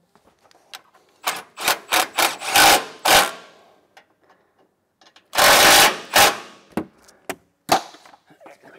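Cordless impact driver run in short bursts, driving 13 mm bolts into clip nuts on the truck's frame rail, with the longest run about five seconds in, and a few sharp knocks of metal and tool handling in between.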